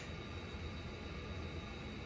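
Faint steady room noise with a low hum; no distinct sounds stand out.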